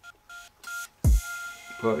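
Two short electronic beeps, each a pair of tones, then a sudden deep boom that falls in pitch, followed by a steady held tone.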